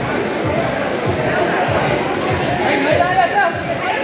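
Indoor futsal play in an echoing gym: repeated dull thuds of feet and the ball on the hardwood court, over a steady din of players and spectators calling out, with one louder shout about three seconds in.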